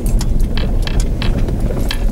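Vehicle cabin noise while driving slowly over gravel: a steady low engine and tyre rumble with frequent sharp ticks and rattles.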